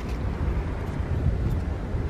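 Steady low rumble with a faint hiss, with no distinct knocks or tones: outdoor background noise on the microphone.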